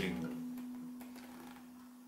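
A single acoustic guitar note ringing on and fading slowly away, from an Ibanez copy of a Gibson Hummingbird.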